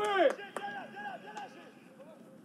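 Faint on-field sound of a football match: short calls from players on the pitch and a few sharp knocks of a ball being kicked, growing fainter toward the end.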